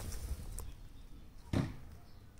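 A single sharp knock about one and a half seconds in, with a faint click at the start, over quiet outdoor background.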